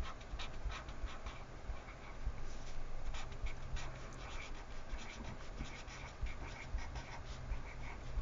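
Felt-tip marker scratching across paper in short, quick, irregular strokes as a name is handwritten.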